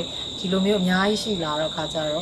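A woman speaking over a steady, high-pitched insect drone of crickets that runs unbroken under her voice.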